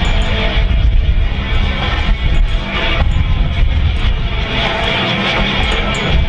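Continuous roar of the twin General Electric F414 turbofan jet engines of four Boeing F/A-18F Super Hornets flying in formation, heard together with loud music.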